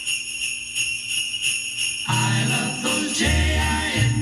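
Christmas music playing through a portable radio's speaker: jingle bells shaken in a steady rhythm, about four shakes a second, joined about two seconds in by bass and other instruments.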